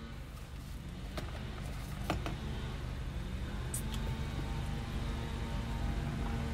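Low, steady rumble of a car heard inside the cabin, growing a little louder, with a few light clicks and taps.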